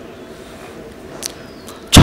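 A pause in a man's speech over microphones: low steady background noise with a faint short tick a little past halfway. His voice comes back in right at the end.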